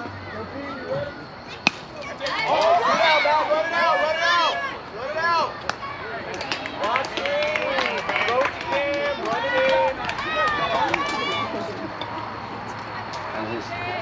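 A single sharp crack of a baseball being hit about two seconds in, followed by several high voices yelling and cheering for about nine seconds, loudest just after the hit.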